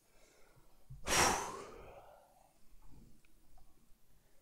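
A man's single heavy exhale, a sigh close to the microphone about a second in, fading out over about a second. A few faint clicks follow near the end.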